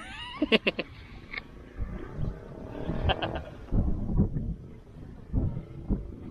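Wind buffeting the microphone in low gusts, with a few brief sharp clicks about half a second in and again about three seconds in.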